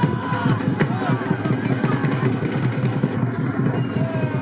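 A drum beaten fast and steadily, many strokes a second, under a large crowd shouting and cheering.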